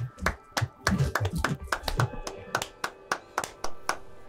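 Two people clapping their hands in a quick, somewhat uneven run of claps, about three or four a second, applauding.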